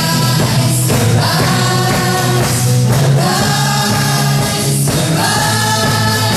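A live gospel worship band playing, with several voices singing together over drums, keyboard, and acoustic and electric guitars.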